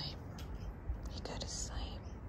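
A person whispering softly, a few breathy hisses about half a second in and again in the second half, over a steady low rumble.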